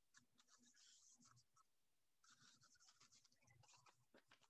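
Near silence, with faint crackling and rustling of a sheet of paper being handled and rolled into a cylinder.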